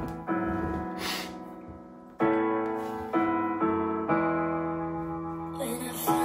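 Acoustic piano playing a slow introduction: about five sustained chords, each struck and left to ring out and fade.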